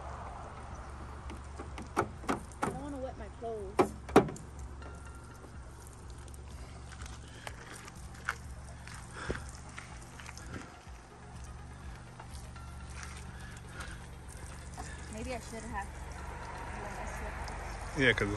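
Portable car-mounted camp shower running: a steady low hum with water spraying onto gravel. A few sharp knocks and short vocal sounds come about two to four seconds in.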